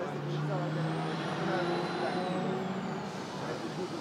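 A passing vehicle: a steady low hum and a faint high whine that rises and then falls over a few seconds, with muffled voices around it.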